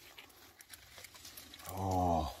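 A few faint clicks of hand shears snipping grape clusters from the vine. Near the end comes a short hummed vocal sound from a man.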